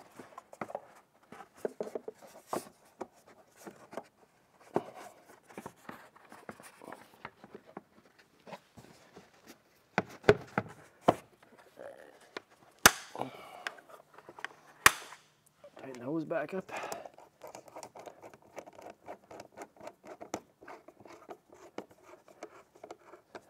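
Plastic air-intake parts being handled and pressed into place: scattered clicks, scrapes and rattles of the airbox lid and intake tube being refitted over the air filter, with a few sharp clicks near the middle.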